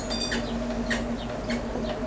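Electric potter's wheel humming steadily as it spins a clay bowl being thrown, with a few short high chirps like a bird's.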